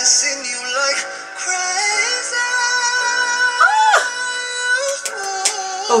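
A man singing a slow ballad over music, holding long notes, with a quick rise-and-fall vocal run about four seconds in.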